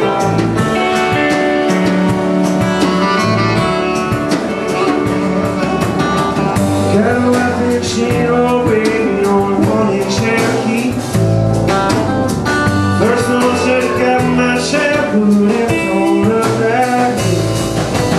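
A live country-rock band playing: acoustic and electric guitars, saxophone, upright bass and drums, with steady drum strikes.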